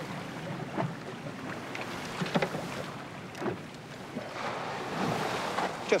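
Wind and sea noise on the open deck of a small boat, with a few short knocks and clatters as dive gear is handled.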